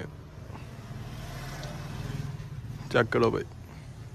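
Low, steady rumble of a motor vehicle's engine that swells towards the middle and then eases off. A brief spoken word comes about three seconds in.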